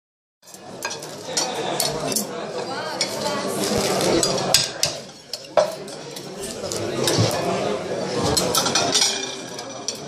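Roast suckling pig being cut with the edge of a china plate, giving repeated sharp clicks and knocks of china against the glazed earthenware dish, with clinks of a serving spoon and plates.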